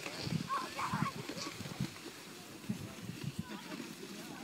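Voices from a group of people sledding together, short calls and cries heard over outdoor noise, with a few brief bursts in the first second and more near the end.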